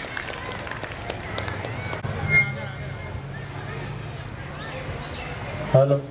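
Scattered hand clapping from an audience, dying away over the first two seconds, then quieter background noise, with a man's voice starting up on the microphone near the end.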